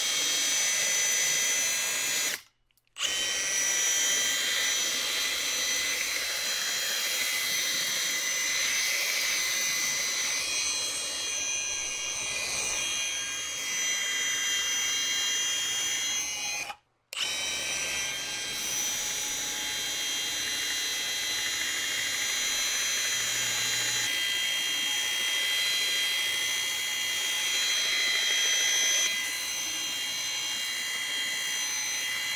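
Milwaukee M18 variable-speed angle grinder driving a pipe-polishing belt attachment, its sanding belt running around a round steel tube with a steady high whine. The sound cuts out abruptly for a moment twice, about two and a half seconds in and again around seventeen seconds.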